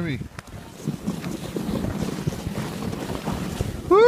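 Wind rushing over the microphone and a sled sliding over snow on a ride down a hill, an unsteady noise throughout.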